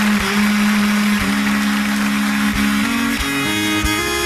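Fiddle bowing a long, low held note, then a slow line of held notes stepping upward, with guitar behind it, opening a live country song.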